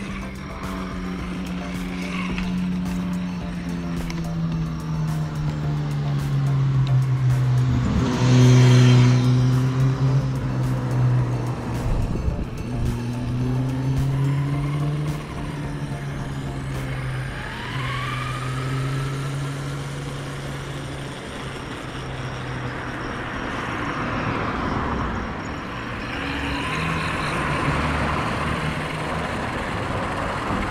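Electric motors whining, their pitch gliding up and down with speed, from a Losi Rock Rey 1:10 RC truck and an InMotion V5S electric unicycle. Tyre noise on paving runs underneath, and there are sharper rising whines when the truck accelerates.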